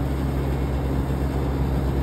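Steady machine hum and rushing noise of Daikin VRV IV outdoor condensing units running, with a constant low drone underneath.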